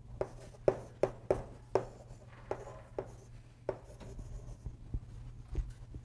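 Chalk tapping and scraping on a chalkboard as letters are written: a quick run of sharp taps for about four seconds, then only a few scattered ones. A steady low hum sits underneath.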